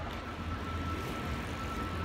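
Steady low outdoor rumble, with a faint thin steady tone held above it.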